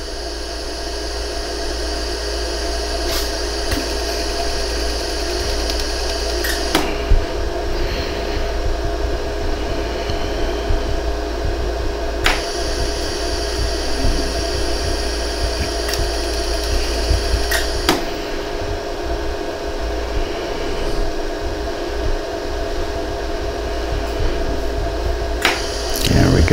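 LaserStar jewelry laser welder humming steadily as it runs, with a sharp click every few seconds, about six in all, as single laser pulses fire to fill pinholes in a hollow gold earring with thin filler wire.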